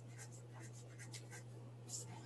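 Faint scattered small clicks and ticks, with a slightly louder one near the end, over a steady low hum.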